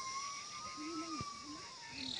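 Faint rural outdoor ambience: a thin, slightly wavering high tone runs throughout, with a brief low sound about a second in.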